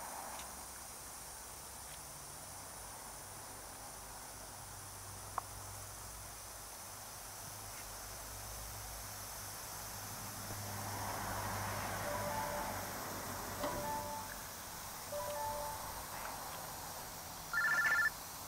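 Faint steady hiss of pop-up lawn sprinklers spraying, growing a little louder about ten seconds in. A few short beeping tones come in the second half.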